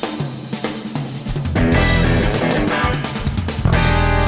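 A live blues-rock band led by a drum kit playing busy fills on snare, bass drum and cymbals. The bass is thin for the first second and a half and then comes back in. A little before the end the full band hits and holds sustained chords.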